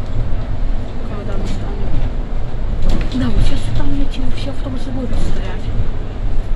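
Inside a Solaris Urbino IV 18 articulated city bus on the move: a steady low rumble of the bus running along the street, with people talking indistinctly in the middle.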